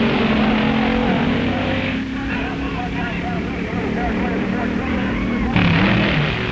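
Engines of sports cars accelerating down a drag strip, a steady drone of several engine tones. The sound changes abruptly to a quieter mix about two seconds in, and to a louder, rougher engine sound near the end.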